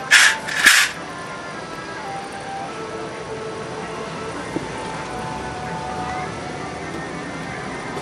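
Wind rising ahead of a thunderstorm, a steady rushing with two short, loud hissing gusts right at the start. Faint music plays underneath, a thin melody of held notes.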